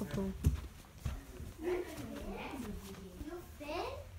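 A person's voice talking or murmuring, with a couple of short knocks early on.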